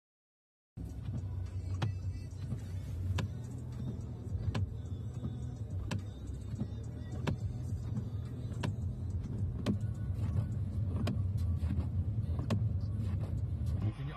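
Inside a car's cabin on a snowbound motorway: a steady low rumble of engine and road, with a sharp click repeating about every second and a half.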